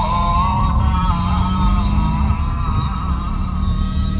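Car driving, heard inside the cabin: a steady low rumble of engine and tyres on the road.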